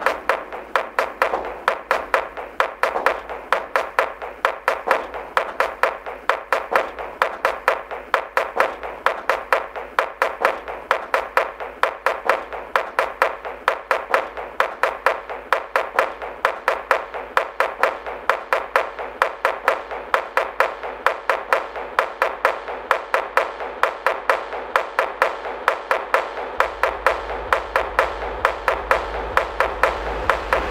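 Dark techno track in a stripped-down percussive passage: a fast, evenly repeating loop of sharp clap-like hits, with a low bass that swells near the end.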